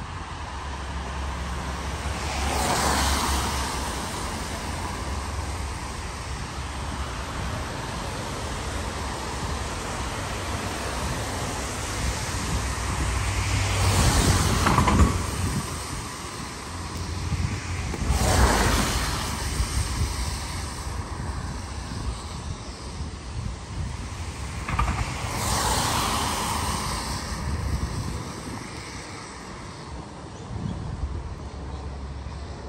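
Cars passing one at a time on a wet road, each a swelling and fading hiss of tyres on water, four in all. Wind rumbles on the microphone underneath.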